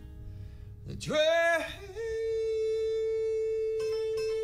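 A man singing a slow song to his own acoustic guitar: a short sung phrase about a second in, then one long held note, with plucked guitar notes coming in near the end.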